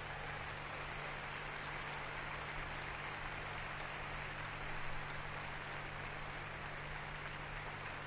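Steady faint hiss with a low hum underneath: room tone.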